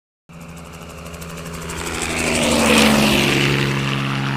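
Sound effect of a propeller aircraft engine passing by. The steady engine hum starts a moment in and grows louder to a peak about three seconds in.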